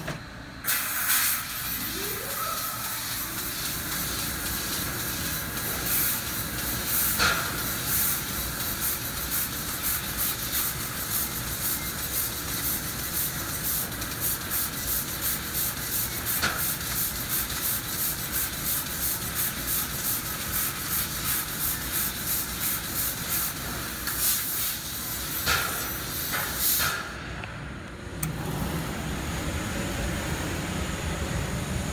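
Fiber laser cutting head cutting stainless steel sheet, its assist gas blowing in a steady hiss that pulses about twice a second for much of the time as it cuts one short slot of a living-hinge pattern after another. A brief rising whine about two seconds in.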